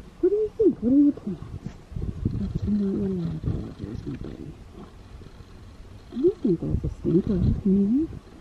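A woman's wordless cooing and humming in three bouts of rising-and-falling calls, with low rumbling and rubbing as the colt's muzzle presses against the phone.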